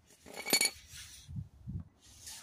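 A single bright metallic clink, with a short ring, about half a second in: hand tools knocking together as the drain plug is loosened by hand. Two soft low knocks follow.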